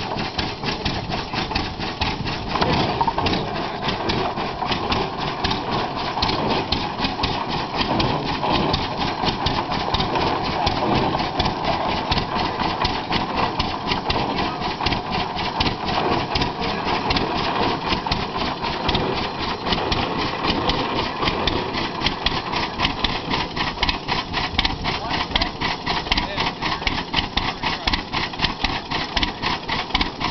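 Hart-Parr tractor engine running steadily, an even, rapid beat of firing strokes.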